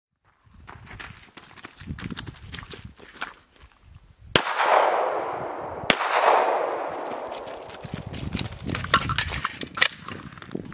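Two gunshots about a second and a half apart, each followed by a long fading echo. Before them there are faint scattered clicks and shuffling.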